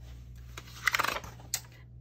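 Pages of a disc-bound planner being turned by hand: a short cluster of paper rustles and light clicks about a second in, then one more click.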